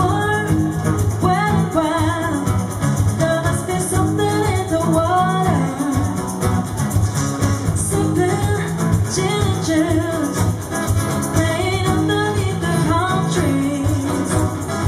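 Live acoustic pop cover: a male and a female voice singing over two strummed acoustic guitars, with a cajón keeping the beat.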